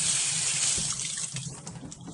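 Kitchen faucet running into a sink, the stream splashing over a baby's hand. The water sound dies away in the second half as the tap stops.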